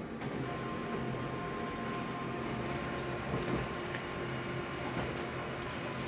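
Office colour photocopier running a copy job: a steady mechanical hum with a thin, steady high whine through the middle, as the page is printed and fed out.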